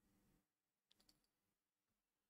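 Near silence, with a couple of very faint clicks about a second in.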